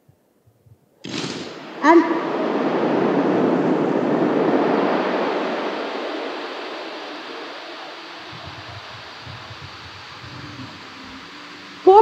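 Crowd cheering, with a shout near the start. It breaks out suddenly about a second in, swells for a few seconds and then slowly dies away.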